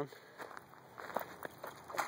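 Soft, irregular footsteps and rustling in dry grass at the water's edge, a few scattered crunches and ticks.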